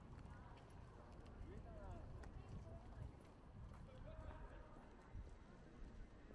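Faint clip-clop of a carriage horse's hooves on paving stones, with scattered sharp hoof clicks and distant voices of passers-by.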